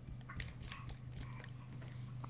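A baby's palms patting and slapping on a glazed tile floor as she crawls: a few soft, irregular clicks over a steady low hum.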